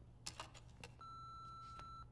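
A few faint clicks, then a steady electronic beep lasting about a second: an answering machine's record tone just before a caller's message.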